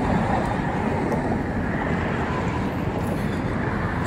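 Steady road-traffic noise, an even rumble with no distinct events.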